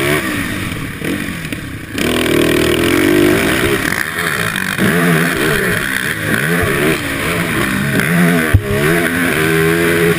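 Sport quad (ATV) engine racing on a dirt track, revving up and down as the rider works the throttle through the gears. It eases off from about half a second in, comes back on hard at about two seconds, then climbs and drops in pitch again several times. A single sharp thump comes near the end.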